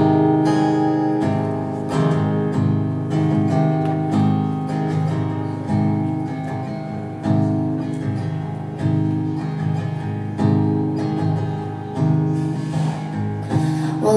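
Solo cutaway acoustic guitar playing the instrumental introduction to a song: a repeating chord pattern, each chord ringing on between strokes.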